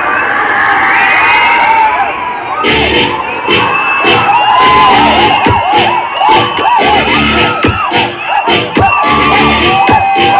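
A cinema crowd of fans cheering, shouting and whistling over the film's soundtrack music, with many short rising-and-falling whistles. From about three seconds in, a dense run of sharp bangs joins the noise.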